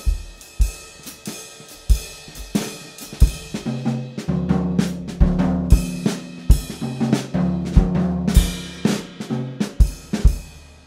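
Drum kit played as a jazz groove: bass drum and snare strokes under cymbal and hi-hat. A low held tone joins the drums about four seconds in.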